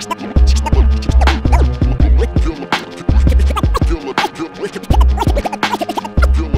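Turntable scratching over a hip-hop beat: a vinyl scratch record pushed back and forth by hand, making rapid, chopped pitch-sliding scratch sounds over heavy bass and drum hits.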